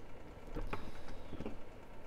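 Faint handling noises at a fly-tying vise: a few light clicks and rustles as a hand works the bucktail and thread.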